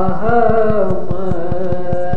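A man's voice chanting an Urdu devotional poem, holding a long note that bends downward, over a steady backing drone and a fast, even clicking pulse.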